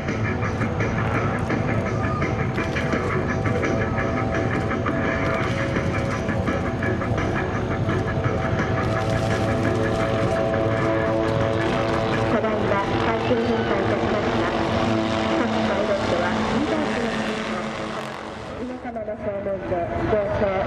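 A formation of military helicopters flying past, with steady rotor and turbine sound. The pitch shifts slightly as they move and drops briefly near the end.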